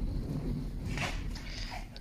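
Seven-week-old Shiba Inu puppies making a couple of faint, short little noises, one about a second in and one near the end. Under them runs a steady low rumble from the camera being moved.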